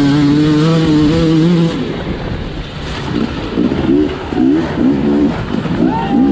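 Two-stroke enduro motorcycle engine held at high revs, then the throttle closes a little under two seconds in. After that it runs in a string of short, quick revs, about two a second.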